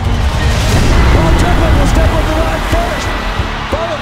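Background music over loud arena crowd noise, which swells for a couple of seconds in the middle, with a short laugh partway through.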